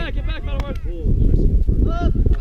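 Wind buffeting the camera microphone in a steady low rumble, with distant shouted calls from players in about the first second.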